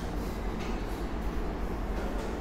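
Steady low background hum with a faint hiss, even throughout, with no distinct events.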